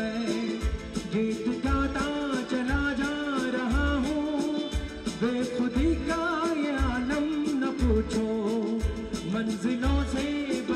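Live band playing a Hindi film song, with a male voice singing the melody over keyboards, drum kit and hand percussion. A bass-drum beat lands about once a second under regular cymbal ticks.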